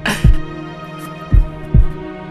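Hip-hop beat intro: a sustained chord held under deep kick-drum hits that fall in two quick pairs about a second apart.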